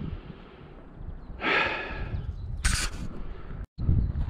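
A person's long, heavy sigh about a second and a half in, over steady wind rumble on the microphone. A short sharp hiss follows about a second later, and the sound drops out suddenly just before the end.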